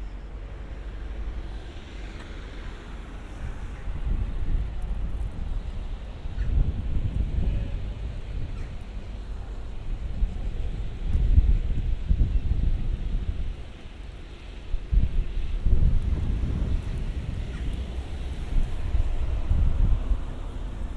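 Wind buffeting the camera microphone in uneven gusts, a low rumble that swells several times and dips briefly about two-thirds of the way through.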